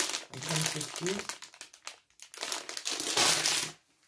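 Plastic sweet packet crinkling as it is handled, with a long, loud rustle in the second half that stops just before the end.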